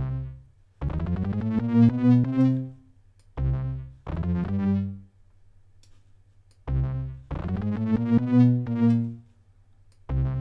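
Synthesizer bass notes from a software instrument, played in three short phrases of a few notes each with quiet gaps between. The notes brighten as each phrase starts. The bass is being laid out to lock to the kick pattern of a dancehall beat.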